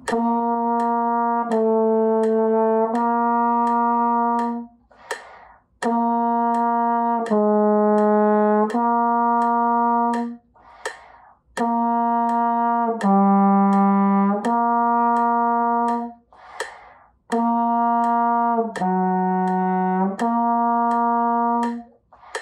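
Trombone playing long tones with tongued "tah" attacks: four sets of three held notes, each set a steady note, a step lower, then back up to the first note. A quick audible breath comes between sets.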